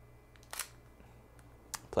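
Sony a6000 mirrorless camera's shutter firing once for a pop-up-flash exposure: a single short click about half a second in, with fainter ticks before it and another near the end.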